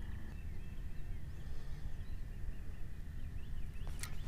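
Quiet open-water ambience: a low steady rumble with a few faint, distant bird chirps, and a thin steady high whine that cuts off near the end.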